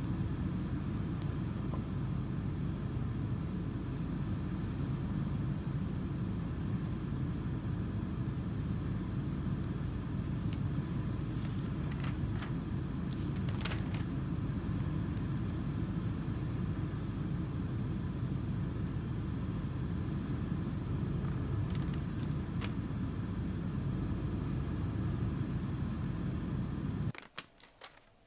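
Steady low outdoor background rumble, with a few faint clicks, that cuts off suddenly near the end.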